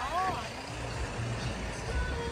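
A van driving past on the road: a low, steady engine and tyre rumble, with a brief voice-like sound right at the start.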